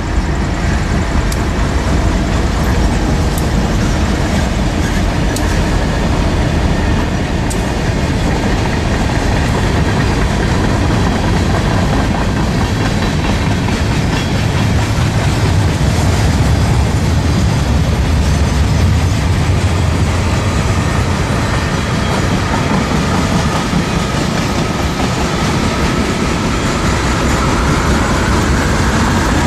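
A freight train passing at close range: the last diesel locomotives, then a long string of freight cars rolling by, a steady, loud rumble of steel wheels on rail.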